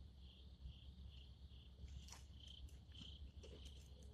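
Near silence with faint insect chirping: short high pulses repeating about three times a second over a low steady hum, with a couple of faint clicks.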